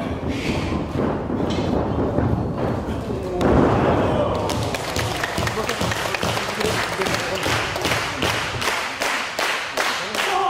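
Wrestlers' bodies thudding on a canvas-covered wrestling ring, the heaviest impact about three and a half seconds in, followed by a fast, even patter of sharp knocks.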